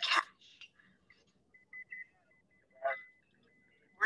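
Mostly quiet, with two brief voice-like snatches, one at the start and one about three seconds in, and a faint thin steady tone in the second half. This is a film clip's soundtrack played over a video call with audio trouble.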